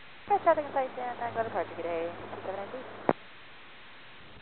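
A brief, weak voice transmission over airband VHF radio, typical of a pilot's reply to the tower, with a steady hum under the voice. It cuts off with a sharp squelch click about three seconds in, leaving radio hiss.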